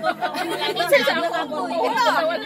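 Several people talking over one another in lively, overlapping chatter.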